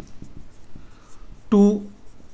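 Marker pen writing on a whiteboard: a run of short, faint strokes as a word is written.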